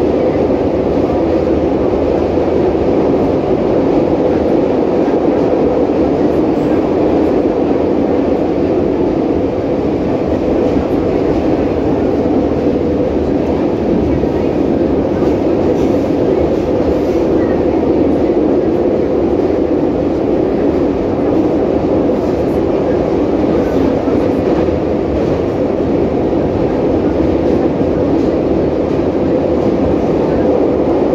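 Interior running noise of an 81-553.3 "Kazan" metro train travelling through a tunnel between stations: a loud, even rumble with a steady hum that holds throughout, heard inside the car by the doors.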